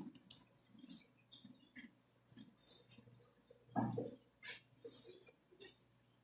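Faint scattered clicks and taps of a computer mouse and keyboard while a web page is opened, with one brief, louder low sound about four seconds in.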